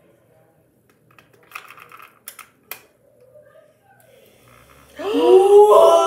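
Light plastic clicks and taps of AA batteries being fitted into the battery compartment of an O2cool handheld mist fan, a few sharp clicks between about one and three seconds in. A voice comes in loudly near the end.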